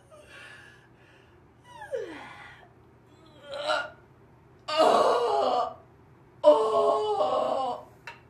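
A woman yawning theatrically out loud: a few short vocal sounds, one sliding down in pitch, then two long, loud drawn-out yawns in the second half.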